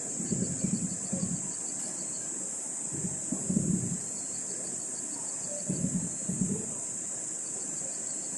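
Badly degraded recording audio: a steady high-pitched hiss with a fast, even ticking above it, and a few low, muffled rumbles. The uploader puts the bad audio down to the file having been recovered after deletion from the SD card.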